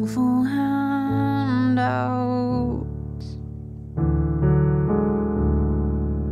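A woman singing over a bass-heavy piano with hardly any treble. The singing stops about halfway through, leaving low piano chords, and a new chord is struck at about four seconds.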